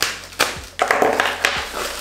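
Small scissors snipping into a white mailer bag, a few sharp clicks, with the bag rustling as it is cut and pulled open.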